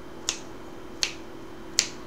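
Three sharp clicks, evenly spaced about three-quarters of a second apart: fingernails flicking slowly against the strings of a nylon-string flamenco guitar in rasgueado practice, barely sounding the notes. A faint note stays ringing underneath.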